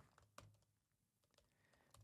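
A few faint, scattered key clicks of typing on a laptop keyboard, close to silence.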